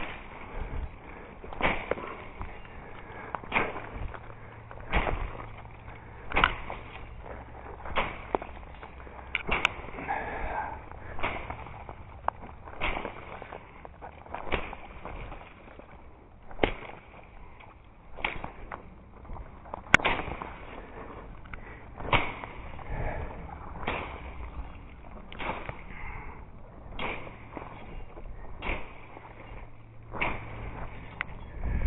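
Machete chopping through brush and thin branches, a sharp stroke about every second and a half, some twenty strokes in all.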